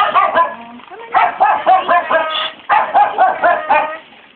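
Several penned dogs barking and yapping together in quick runs of short, high-pitched barks.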